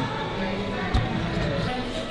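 Busy shop background of indistinct voices, with a single dull thump about halfway through.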